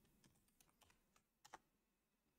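Faint keystrokes on a computer keyboard typing a short command, with two slightly louder key presses about one and a half seconds in.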